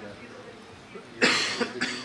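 A man's cough about a second in, after a short quiet pause.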